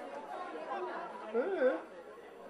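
Several indistinct voices chattering and calling out over an open sports field, with one louder, rising-and-falling call about a second and a half in.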